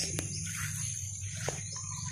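Steady high-pitched drone of crickets or other insects, with two sharp clicks, one just after the start and one about one and a half seconds in.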